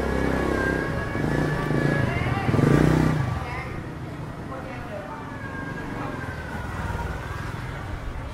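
Busy street: a motorbike engine passes close, loudest about three seconds in and then fading, over people talking nearby. A faint wavering high tone runs underneath.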